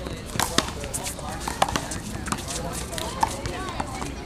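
One-wall handball rally: a small rubber ball smacking sharply off bare hands, the wall and the court a few times at irregular intervals, the loudest about one and a half seconds in, with players' footsteps scuffing on the court.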